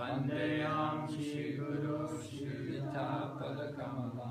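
Sanskrit invocation prayers chanted by voice on a steady, held melody, the phrases drawn out on sustained notes. A new phrase starts after a breath right at the beginning.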